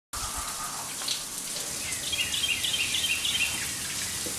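Water pouring steadily from an outdoor rain shower head, a constant hiss. About halfway through, a bird sings a quick run of repeated two-note phrases over it.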